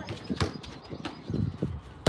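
Football struck with the side of the foot during a roll-and-pass drill: one sharp knock about half a second in, then a few softer thumps of the ball on artificial turf.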